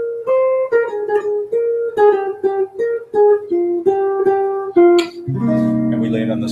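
Archtop jazz guitar playing a chord-melody line: plucked chords follow one another every third to half second, the top note stepping downward. About five seconds in, a fuller low chord is struck and left ringing. The guitar is a little out of tune.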